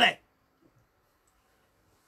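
A man's voice ending a spoken word, then a pause of near silence with one faint click.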